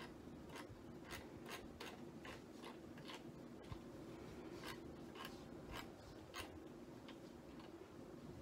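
Faint, soft ticks and light rubbing, about two or three a second, from gloved hands handling the paint cup and bottle bottom during an acrylic pour, over a steady low room hum.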